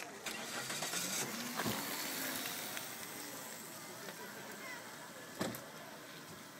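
Scooter-style electric bike pulling away, its sound fading as it moves off down the road. A single sharp knock comes near the end.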